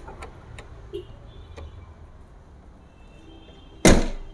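The steel bonnet of a 2000 Toyota G Corolla is lowered and slams shut with one loud bang near the end. A few faint clicks come before it as the bonnet is handled.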